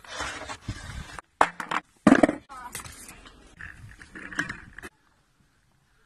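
Skateboard being handled: scraping and a couple of sharp knocks from its wheels and trucks, in short cut-together bits with snatches of a voice. The sound stops about a second before the end.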